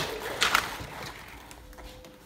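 Cordless cellular blackout shade being pulled down by hand: a brief swish about half a second in, then it fades quieter.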